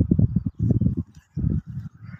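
Wind buffeting the phone's microphone in irregular gusts, a low rumble that comes and goes with short breaks.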